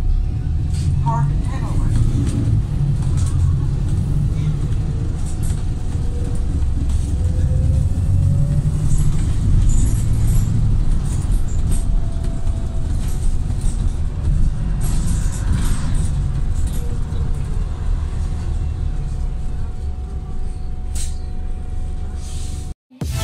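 Interior sound of a Wright Gemini 3 Volvo B5TL double-decker bus on the move: a steady low rumble from the engine and drivetrain, with rattles and clicks from the body and fittings. A faint rising whine comes in about five seconds in, as the bus picks up speed.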